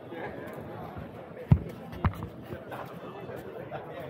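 Background chatter of a crowd of people talking, with two dull thumps, the louder one about a second and a half in and another half a second later.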